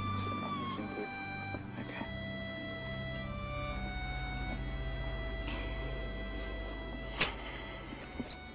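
Electronic keyboard playing slow, sustained chords in a string-like voice, the held notes changing every second or so. A sharp click sounds about seven seconds in.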